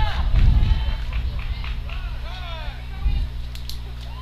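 Distant voices of players and fans shouting and cheering across a softball field, loudest in the first second or so, over a steady low hum.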